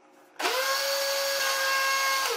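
National electric blender (a food-processor base with a blender jug) switched on about half a second in: the motor spins up quickly and then runs with a steady whine, mixing cake batter with flour.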